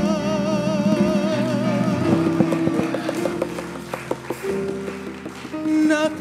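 Live gospel solo with band: a woman's held note with wide vibrato fades out in the first second or so, then the accompaniment carries on alone, sustained chords with a guitar picking short notes, and her voice comes back in near the end.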